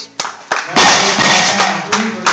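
Eleiko barbell with bumper plates dropped onto the wooden lifting platform after a completed overhead lift, with a couple of knocks in the first half-second. About three-quarters of a second in, loud clapping and cheering begin for the successful lift.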